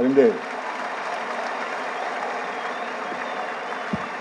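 A man's voice ending a sentence, then an audience applauding steadily. A soft low thump comes near the end.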